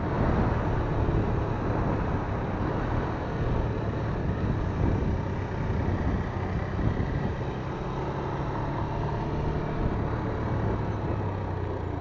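Motorcycle engine running steadily while riding at moderate speed, with a constant low hum and road and wind noise.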